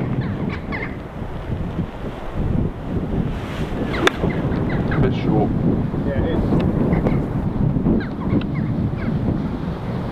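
Wind buffeting the microphone throughout, with one sharp click about four seconds in: a golf iron striking the ball on a short pitch shot.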